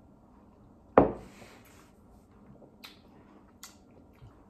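A drinking glass set down on a wooden table: one sharp thud about a second in that dies away quickly, followed by a few faint small clicks.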